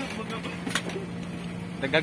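Steady low hum of running split-type air-conditioner outdoor units, with one sharp click about three quarters of a second in.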